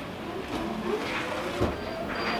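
Self-balancing hoverboard's hub motors running as it rolls across carpet, with a soft thump about one and a half seconds in.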